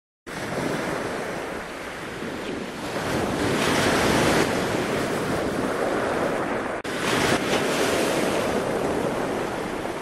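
Ocean surf and wind rushing over the microphone in a steady, even roar of water noise, which cuts out for an instant about seven seconds in and then carries on.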